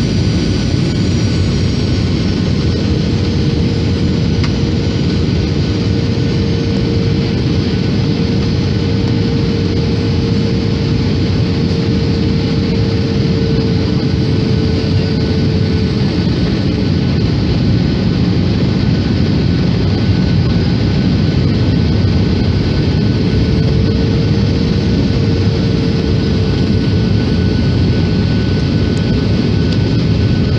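Airliner cabin noise on descent: a steady, loud rush of engine and airflow, with a faint humming tone that fades in and out twice.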